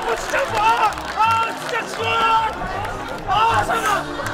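Men shouting and yelling encouragement in short, repeated calls, with background music playing underneath.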